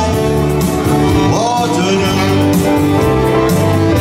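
Live oldies music from a keyboard-and-saxophone duo: a Yamaha Tyros arranger keyboard plays the backing while a held melody line runs over it, scooping up into a long note about a second and a half in.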